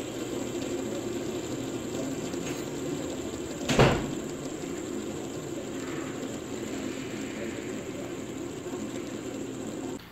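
Metal fidget spinner spinning on a wooden tabletop, giving a steady whir, with one sharp knock about four seconds in.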